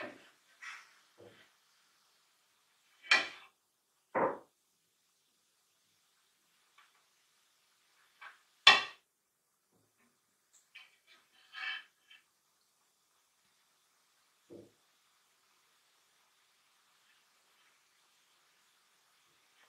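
Handling noise from a dreamcatcher's metal hoop frame: scattered short knocks and clinks, with louder ones about three, four and nine seconds in.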